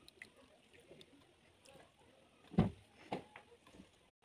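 Crushed berry pulp and water poured from a plastic bowl onto a cloth strainer, faintly splashing and dripping. A dull thump comes about two and a half seconds in, with a softer one just after, as the bowl and cloth are handled.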